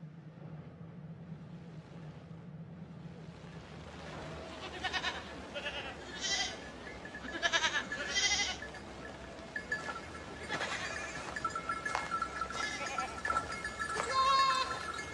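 A flock of goats bleating, several short calls repeating from about four seconds in.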